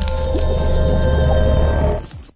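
Logo intro sting: music with a sustained deep bass and a few held tones, and a splashy paint-splat sound effect laid over it.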